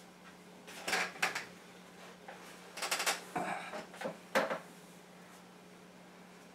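Handling noise from an electric guitar being settled and adjusted: a few scattered clicks and light rattles, over a faint steady low hum.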